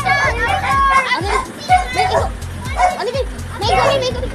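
High-pitched voices, like children talking and playing, over background music with a steady low beat.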